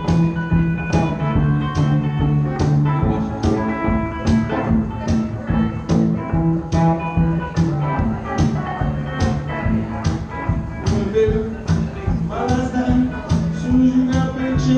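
Live instrumental music: an amplified guitar playing over a steady beat of percussive hits, a little more than one a second, with a sustained low note underneath.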